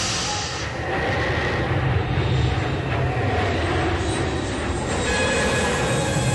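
Spaceship engine sound effect: a steady low rumbling drone.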